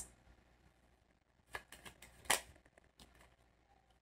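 Tarot cards being handled: a card drawn from the deck and laid on a table, heard as a few faint flicks and taps in the second half, one louder than the rest.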